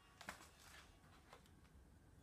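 Near silence, with two faint clicks, one about a quarter second in and one just past a second: small hands handling a yellow plastic Kinder Surprise toy capsule.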